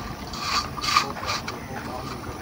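Hands kneading and pressing crumbly flour-dough fishing bait into balls on a steel plate: irregular short scraping and crackling strokes.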